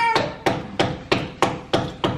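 A run of sharp, evenly spaced strikes, about three a second, six or so in all.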